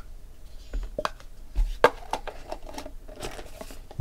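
A stack of thick trading cards handled and set down on a table: light sliding and rustling with a few sharp taps and clicks.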